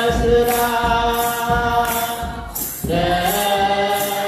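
A choir of young voices chanting an Ethiopian Orthodox wereb hymn in unison over a kebero drum beating a steady rhythm. The singing breaks off briefly about two and a half seconds in, then comes back.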